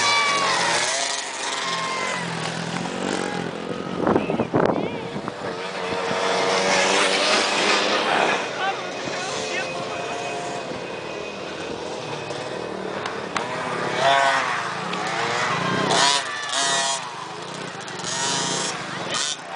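Motocross dirt bike engines revving up and dropping off as riders race over the jumps, with people's voices over them.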